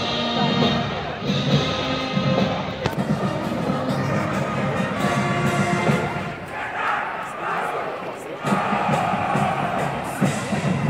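Brass and percussion band music playing, starting abruptly at the outset and continuing, with crowd noise behind it.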